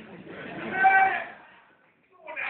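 A person's voice in one drawn-out, high-pitched call that swells to its loudest about a second in and then fades.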